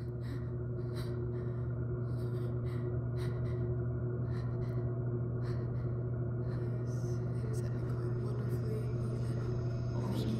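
A deep, steady hum like a dark film-score drone, swelling up from silence at the fade-in, with short ragged breaths or gasps over it about twice a second.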